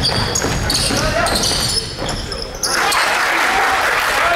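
Basketball dribbled on a hardwood gym floor, with sneakers squeaking as players run, and voices of players and spectators echoing in the gym, which swell over the last second or so.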